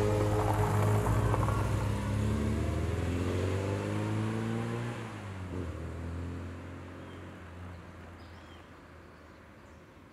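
A classic Mini's A-series engine accelerating away, its pitch climbing for about five seconds. It then fades steadily into the distance.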